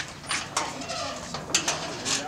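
Steel sheet-metal gate being swung shut: a sharp metal knock, further clanks about a second and a half later, and a wavering, creaking sound in between.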